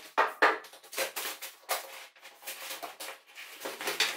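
Footsteps and the handling of a rolled-up backdrop sheet on the floor: irregular knocks, crinkles and rustles, two sharper knocks in the first half-second.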